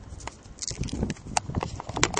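Handheld camera handling noise: irregular clicks and light knocks with low thumps, and no steady tone.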